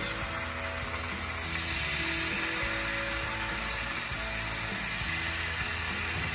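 Teriyaki-and-honey marinated palometa fillets frying in hot oil in a nonstick pan, with a steady sizzle. The sizzle grows louder about a second and a half in as more fillets go into the pan.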